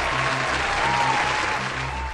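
Crowd applause and cheering, used as a sound effect, over background music with a steady low beat.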